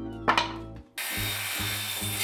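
A sharp knock, then about a second in a corded handheld circular saw starts cutting through a wooden board, a steady noise that carries on to the end, with background music underneath.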